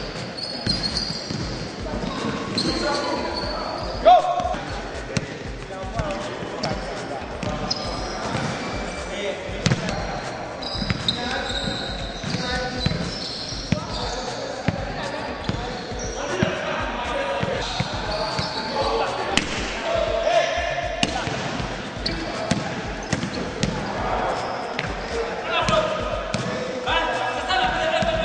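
Basketballs bouncing on a wooden gym floor, many bounces following close on one another, with one sharper, louder hit about four seconds in.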